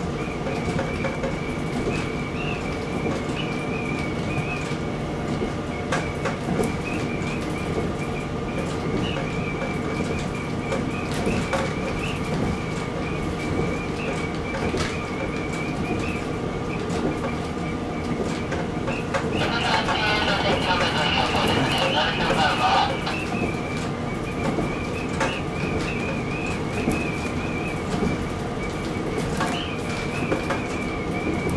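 KiHa 40 series diesel railcar running steadily along snow-covered track, its engine hum heard from inside the cab. About two-thirds of the way through, a louder sound rises over it for three or four seconds, then falls away.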